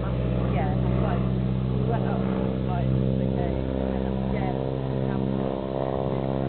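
Biplane's piston engine running steadily in flight overhead, an even, sustained hum.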